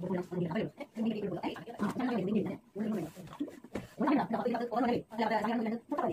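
Speech: women talking in a language the recogniser could not transcribe.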